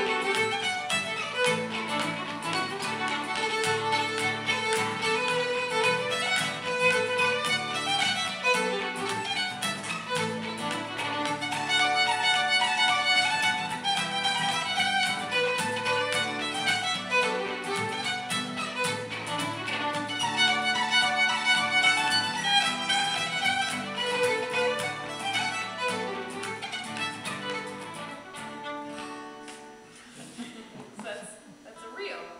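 Fiddle playing a fast reel over strummed acoustic guitar chords. The tune ends near the end and the sound falls away.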